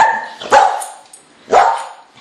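A dog barking three times: short, sharp barks, the second about half a second after the first and the third a second later.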